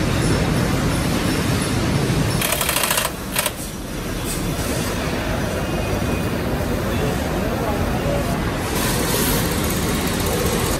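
Steady background noise of a tractor assembly plant floor. It drops a little about three seconds in, with short bursts of hiss there and again near the end.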